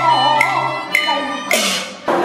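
Cantonese opera ensemble playing: sharp percussion strikes keep time about twice a second under a wavering melody. About one and a half seconds in comes a louder, ringing strike, and the music cuts off at the end.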